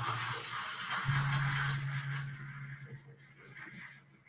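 Espresso machine hissing loudly, fading out a little over two seconds in, over a steady low hum, with background music playing.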